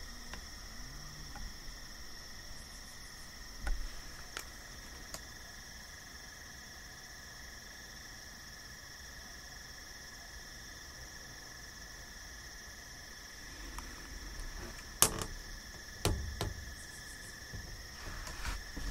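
Steady evening insect chorus, a continuous high-pitched trill. A few sharp clicks and knocks close by, the loudest about fifteen seconds in and another a second later.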